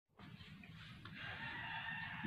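A faint, drawn-out bird call in the background, growing louder, over low room noise.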